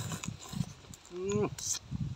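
A man chewing and sucking on pieces of pounded field crab, with wet smacking mouth sounds. A short rising vocal "mm" of reaction comes a little past a second in.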